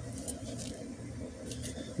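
A few faint, light clicks and rustles of hands handling a removed mower-blade bolt and its splined washer, over a low steady hum.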